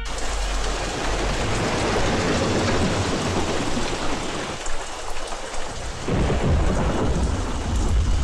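Heavy rain pouring down steadily, with low thunder rumbling underneath that swells about six seconds in.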